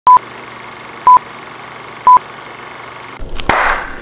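Film-leader countdown sound effect: three short, loud, high-pitched beeps one second apart over a steady hiss. About three and a half seconds in comes a sharp click and a falling whoosh.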